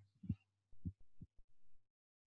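A few short, faint low thumps, about three in two seconds, over a faint steady hum, in an otherwise near-silent pause.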